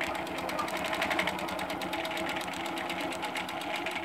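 Innova longarm quilting machine stitching a straight line: a steady, rapid, even run of needle strokes over the motor's hum, cutting off at the end.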